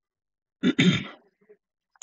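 A man clearing his throat once, a short, rough burst about half a second in.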